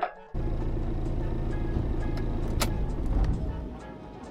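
A car engine running with a low, even rumble, cutting in suddenly just after the start and fading away near the end.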